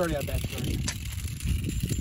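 Two Beyblade spinning tops spinning on rough asphalt with a steady scraping hiss and one sharp click about a second in, over a low rumble.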